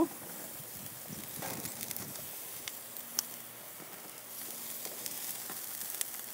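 Shrimp and vegetable skewers sizzling on a hot gas grill: a steady hiss with small scattered crackles and one sharper pop about three seconds in.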